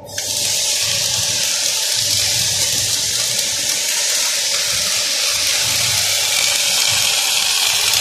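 Wire-feed MIG welding arc struck on steel: a sudden onset, then a steady, loud hiss as the wire burns in with a shower of sparks, over a low hum.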